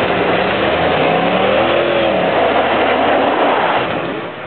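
Dodge Ram 2500 pickup engine revving hard under load as the truck drives through mud and snow, its pitch rising and then falling back around the middle.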